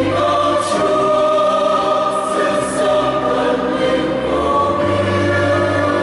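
Mixed choir of women and men singing a Vietnamese Catholic hymn in parts, holding long sustained notes.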